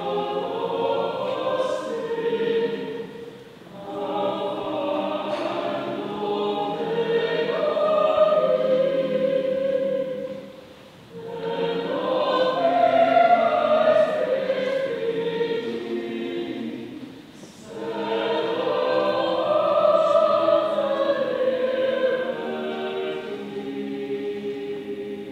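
Choir singing in long sustained phrases, with short breaks between phrases roughly every seven seconds.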